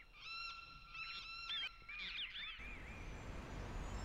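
A flock of large wild birds calling in flight, with repeated calls that rise and fall in pitch. About two and a half seconds in, the calls stop and a low, steady rumble of city traffic takes over.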